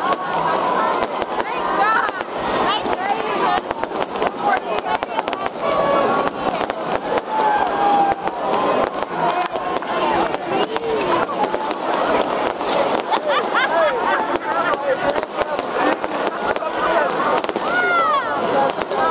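Fireworks going off as a dense, continuous run of sharp crackling pops, over a crowd of many voices talking and calling out.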